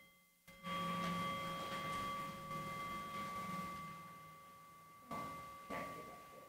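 A clear ringing tone at one pitch with overtones, starting sharply about half a second in and slowly fading away, with a couple of soft knocks near the end.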